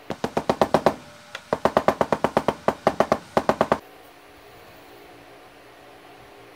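Rapid mallet taps on a metal plate, driving an oversized casting pattern down into Petrobond moulding sand. The taps come about seven a second: a short run, a brief pause, then a longer run that stops just before four seconds in.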